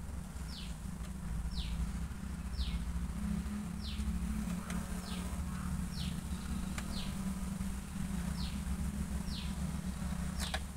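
A steady low hum, with a short high note sliding downward repeated about once a second, like a bird calling over and over. A couple of faint clicks come in the middle.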